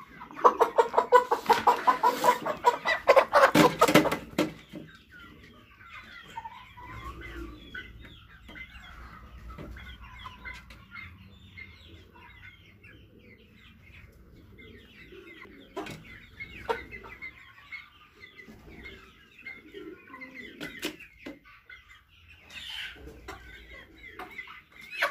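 A flock of Sasso chickens clucking. It opens with a loud, fast run of calls lasting about four seconds, then settles into quieter, continuous chattering clucks with a few sharp taps.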